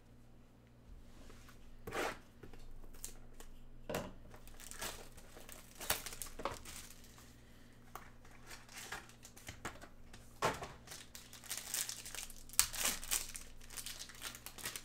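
Crinkling and tearing of a foil trading-card pack wrapper and plastic packaging being opened by hand, in a string of short crackles that grow busiest near the end.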